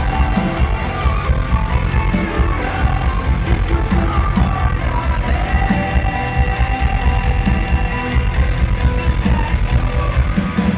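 Rock band playing live in a concert hall: a steady pounding of drums and bass under long held synth and vocal notes.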